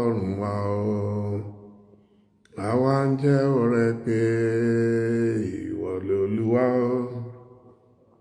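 A man chanting in a low voice on long, level notes: two sung phrases, with a short pause a little under two seconds in before the second, longer phrase begins.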